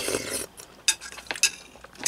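Metal chopsticks and spoon clinking lightly against a glass soup bowl: a few separate sharp clicks in the second half, after a short soft noise at the start.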